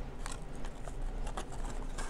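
Card stock being handled and folded into a small box, giving a handful of short crinkles and taps over a steady low hum.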